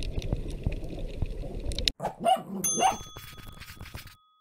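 Muffled underwater noise of a scuba dive, a low rumble with scattered clicks and bubbling, which cuts off abruptly about halfway. A few short loud sounds follow, then a ringing chime-like tone.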